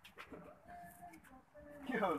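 Faint voices of people talking in the background, with a few small clicks, and a nearer voice coming in near the end.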